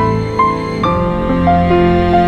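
Calm background piano music: slow single notes over held chords, with a change of chord about a second in.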